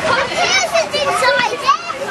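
Several children's voices talking and calling out over one another, high-pitched and excited.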